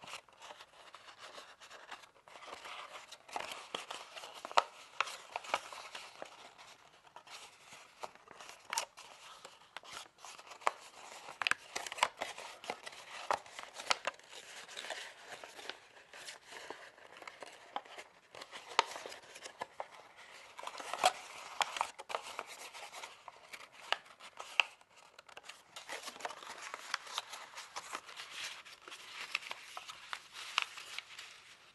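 A creased sheet of origami paper crinkling and crackling as hands collapse and twist it along its folds. Many small, irregular snaps and rustles run on without a pause.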